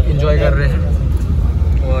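Steady low rumble of a moving minibus's engine and road noise, heard from inside the vehicle, with people's voices over it in the first second.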